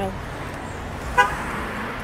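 A single short car horn toot about a second in, over steady street and traffic noise.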